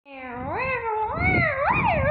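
One long, unbroken, wavering cry that swoops up and down in pitch and grows louder, with a low rumble of the camera being handled beneath it.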